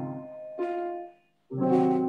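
Keyboard in a piano voice playing slow, sustained chords, each struck and left to ring. The sound drops out briefly just past a second in before the next chord is struck.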